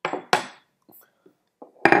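Two sharp clinks of a clay kyusu teapot being handled on a wooden table, close together in the first half-second, followed by a few light taps and another knock near the end.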